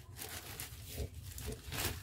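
Faint rustling and soft scraping of soil and roots as a plant is slowly worked out of its pot by a hand covered in a plastic bag, with a few slightly louder rustles, the strongest near the end.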